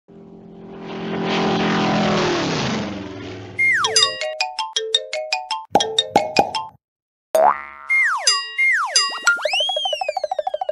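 Cartoon sound effects: a held, swelling tone for the first three seconds that slides down in pitch, then a quick run of falling "boing" springs with clicks and pops, ending in a rising then falling boing that turns into a fast wobble.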